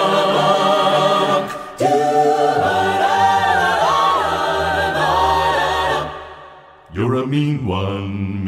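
Mixed-voice a cappella ensemble singing without instruments: a held chord, then after a brief break a new chord with a deep bass note underneath and a high voice moving above it. The chord fades out about six seconds in, and a new sung chord comes in about a second later.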